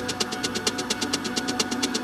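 Dark techno track with fast, even hi-hat ticks about eight a second over a sustained low synth drone.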